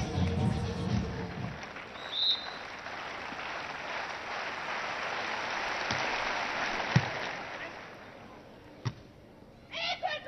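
Spectator crowd noise with venue music dying away in the first second or so, and a short referee's whistle about two seconds in. Then play starts and the volleyball is struck sharply three times, near six, seven and nine seconds.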